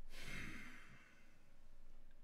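A man taking a deep, audible breath and letting it out in a sigh lasting about a second, then breathing quietly.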